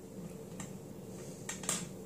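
Faint clicks and a short scrape of small metal hardware, a cooler bracket and its screw, being handled, a few scattered ticks with the loudest about three-quarters of the way in, over a low steady hum.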